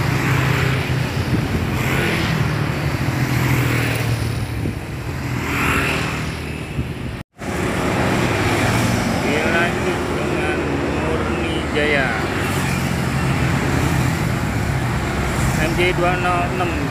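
Roadside traffic: motorcycles, cars and heavy vehicles passing close by, with a steady low engine rumble. The sound drops out briefly about seven seconds in.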